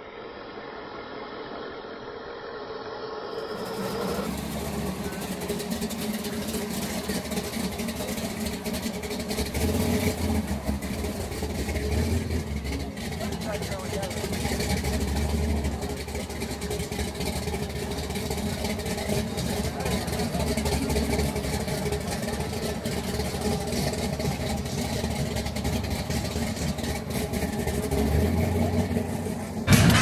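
Classic cars' engines rumbling at low speed as the cars roll slowly past, swelling in a few deeper surges partway through.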